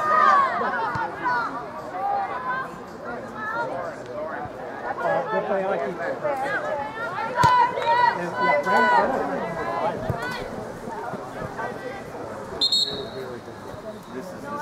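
Overlapping voices of spectators and players talking and calling out at a distance on an outdoor soccer field, with one sharp knock of the ball being kicked about halfway through and a short high whistle tone near the end.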